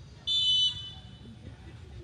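A referee's whistle: one short, sharp blast, shrill and high-pitched, a little after the start, lasting about half a second.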